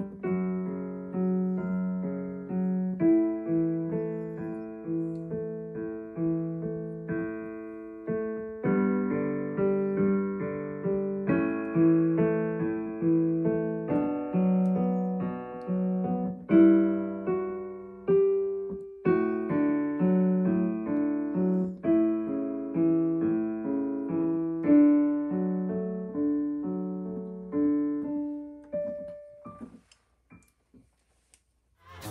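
Digital piano played solo: a flowing melody over chords, each note struck and then decaying. It ends on a single held note that dies away near the end.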